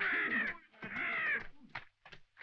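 A crow cawing: two drawn-out caws about a second apart.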